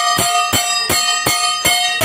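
A hand bell rung steadily during the Gauri welcoming puja, about three strokes a second, each stroke ringing on into the next.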